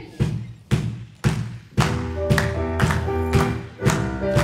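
Live worship band starting a song: a steady drum beat of about two hits a second, joined about two seconds in by held keyboard and bass chords.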